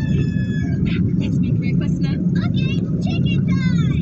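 Steady low rumble of a car's engine and tyres heard from inside the cabin while driving on a city highway. Faint snatches of a voice sit above it.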